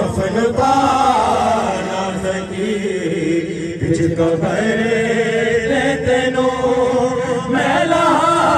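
A noha, a Shia lament for Imam Hussain, chanted in a melodic line that bends and wavers in pitch.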